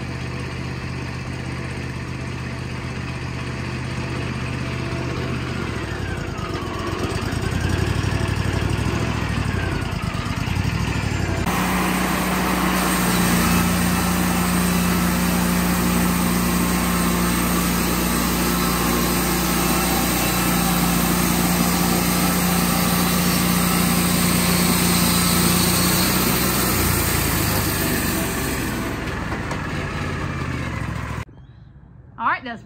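Wood-Mizer LT40 hydraulic bandsaw mill running. Its engine hums steadily at first, and about a third of the way in the band blade enters the white oak cant, adding a loud, steady hiss of cutting that drops away near the end as the cut finishes.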